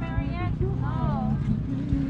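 Wind buffeting the camera microphone in a steady low rumble, with a voice speaking briefly over it.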